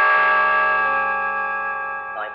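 Film background score: a loud sustained chord of many held notes that swells and then slowly fades, with a deep bass note coming in just after the start.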